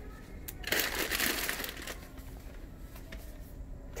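Yarn skeins being handled, their paper label bands crinkling in one burst of about a second, starting about a second in.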